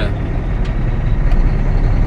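Cummins ISX diesel engine of a Volvo 780 semi truck running with a steady low rumble, heard from inside the cab, as the truck pulls away in gear.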